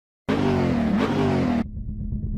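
Car engine revving in a short burst, its pitch dipping and rising again, then cutting off suddenly, leaving a quieter low rumble.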